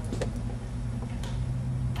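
A few small clicks and taps as the leads of a 12-volt automobile light bulb are fitted into a terminal block by hand, over a steady low hum.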